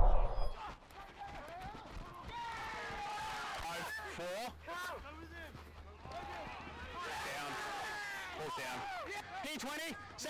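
Several voices shouting and calling at a distance across a rugby league field, overlapping and faint, after a brief loud rumble on the microphone right at the start.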